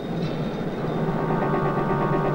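Car petrol engine running steadily, a continuous low hum, with a steady higher tone joining about a second in.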